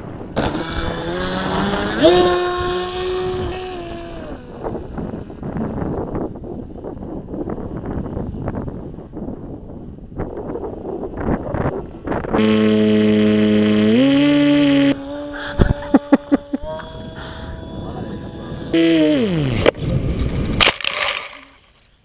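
Electric motor of a radio-controlled model glider whining in flight, its pitch stepping up and down with the throttle and falling steeply about three-quarters of the way through, with wind noise on the microphone.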